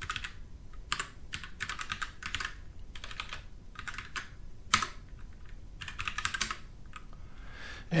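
Computer keyboard being typed on in short bursts of keystrokes, with one louder key press about halfway through.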